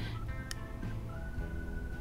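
Quiet background music with sustained tones.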